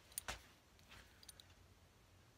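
Near silence: room tone, with two faint short clicks about a quarter of a second in and a few fainter ticks in the middle.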